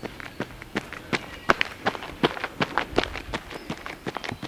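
Running footsteps on a gravel path, a steady stride of close to three footfalls a second.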